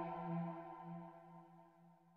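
A sustained electronic tone, one low pitch with a stack of overtones and a slight pulsing waver, that fades away over about two seconds.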